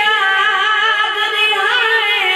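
A boy's voice reciting a noha, a Shia lament, into a microphone, drawn out in long held notes that bend slowly in pitch.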